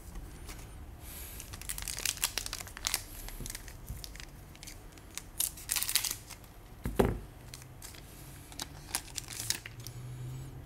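A trading-card booster pack's wrapper being torn open and crinkled in bursts, then the cards slid out and handled, with a single dull thump about seven seconds in.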